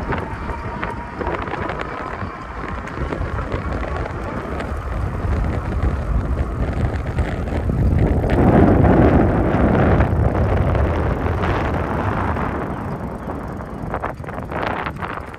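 Wind buffeting a handheld phone's microphone during a bicycle ride, a steady low rumble with tyre and road noise under it. It swells louder about eight to eleven seconds in.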